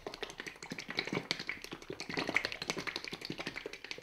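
A plastic squeeze bottle of Novus No. 2 fine scratch remover polish being shaken hard by hand, the liquid sloshing and clacking inside in a rapid, even rhythm.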